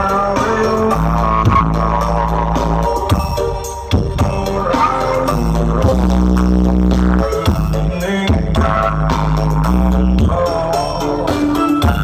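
Loud music with deep, held bass notes that change every second or two, played through a big truck-mounted stack of loudspeakers (an Indonesian "sound horeg" system).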